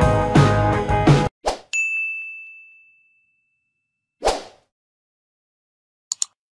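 Background guitar music cuts off about a second in, followed by a single bright ding that rings out and fades over about a second. A short whoosh comes a couple of seconds later.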